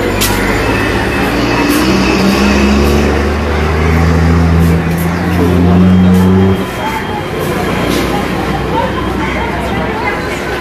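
An engine running with a steady low hum that grows louder, then cuts off abruptly about six and a half seconds in. Faint voices are heard under it.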